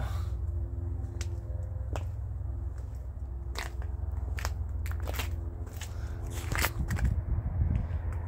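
Footsteps crunching on sandy gravel, with scattered short crunches and scrapes. Under them run a steady low rumble and a faint steady drone.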